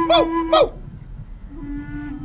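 A flute holding long, steady notes as background music, dropping to a lower note about one and a half seconds in. A voice calls out loudly over it in the first half second or so, then the flute carries on alone and more softly.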